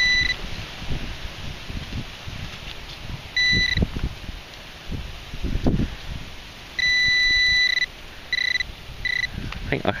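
Handheld metal-detecting pinpointer beeping with a high, steady tone as it is pushed through loose soil in a dig hole: short beeps, one longer beep of about a second a little past the middle, then two more short beeps, signalling metal close to the probe tip. Soil scrapes and small knocks from the probe between the beeps.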